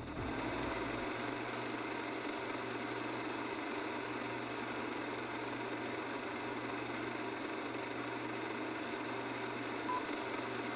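Film projector running: a steady mechanical whir and flutter with a low hum underneath, and a short high beep near the end.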